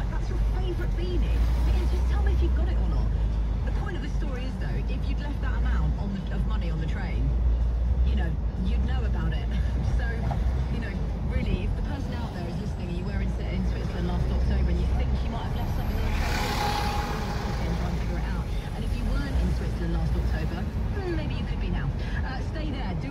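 Steady low rumble of a car driving slowly in town traffic, heard inside the cabin, with the car radio quietly playing talk and music. About sixteen seconds in there is a brief louder hissing noise with a short tone in it.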